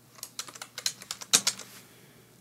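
Computer keyboard typing: a quick run of about a dozen keystrokes as a short word is typed, ending near the end.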